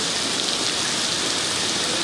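Steady rain falling on standing water, an even hiss.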